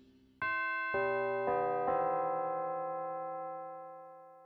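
Piano playing four notes or chords in succession, about half a second apart, each ringing on and slowly fading out.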